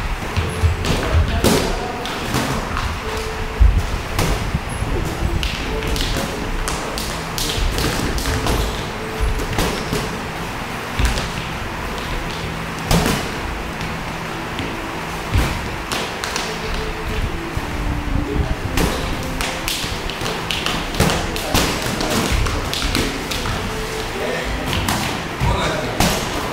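Boxing sparring: gloved punches landing and feet moving on the ring canvas, making irregular thuds and smacks, some bunched in quick flurries.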